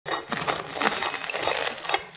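Crisp fried-dough crust of sugar-dusted beignets crackling as a knife saws through it and fingers tear it open: a dense run of small sharp crunches and clicks.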